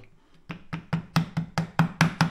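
A small steel pry bar tapping a bent low-grade silver coin lying on a wooden strip on a kitchen table, about nine quick light knocks at roughly five a second, getting louder toward the end, to hammer the coin flat.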